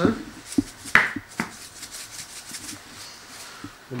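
A salt shaker being shaken over a bowl of beaten egg: three short taps about half a second apart, then a few faint small knocks of handling.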